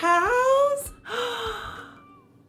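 A woman's wordless, exaggerated vocal sounds: a drawn-out 'ooh' rising in pitch, a quick sharp gasp of breath about a second in, then a breathy, voiced exhale that fades out.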